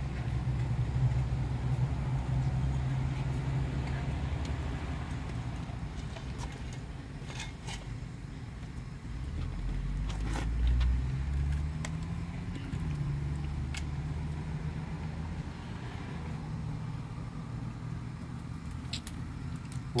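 A motor vehicle engine runs steadily as a low hum, its pitch shifting and swelling for a couple of seconds around the middle. A few light metallic clicks are scattered over it.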